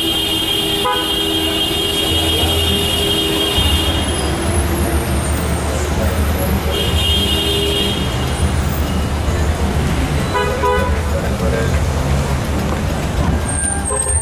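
Busy city street traffic: car engines running and passing under a steady low rumble, with a long car-horn note in the first few seconds, another about seven seconds in and a shorter honk around ten seconds, and people talking.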